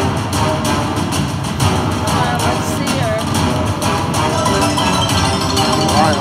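Temple of the Tiger video slot machine playing its free-games bonus music: bright chiming tones and quick sliding notes over clicky percussion as a free spin plays out and the win meter counts up.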